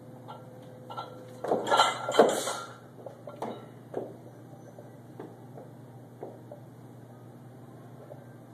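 Loaded barbell's plates clanking and rattling on the sleeves as the bar is pulled and cleaned to the shoulders: a burst of metallic clatter about a second and a half in, lasting about a second, then a few lighter clinks.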